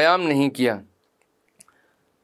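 A man's voice speaking for about the first second, then near silence broken by one faint click about a second and a half in.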